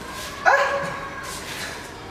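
A wooden front door being opened, its hinge giving a sharp creak about half a second in that draws out for about a second.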